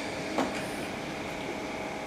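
Steady background hum and hiss of the room, with a faint click about half a second in.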